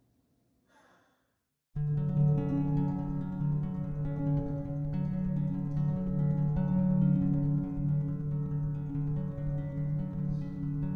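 Near silence, then about two seconds in, guitar music starts suddenly: a slow instrumental of held chords and ringing notes that continues steadily.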